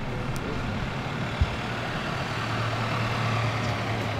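Minivan engine running as the van pulls up, a steady low hum that grows louder in the second half. A single short thump about a second and a half in.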